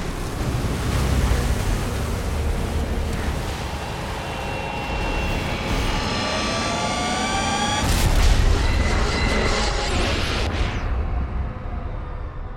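Film sound effects of a giant rogue wave crashing over a cruise ship: a continuous roaring rush of water with a deep rumble, pitched tones climbing for several seconds into a heavy boom about eight seconds in, then fading out.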